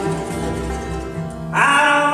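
Bluegrass band playing live: acoustic guitar, banjo and upright bass. About one and a half seconds in, a voice comes in loud on a held sung note that bends up at the start.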